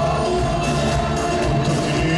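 Live band music with acoustic guitars, bowed strings, congas and drum kit playing a steady beat.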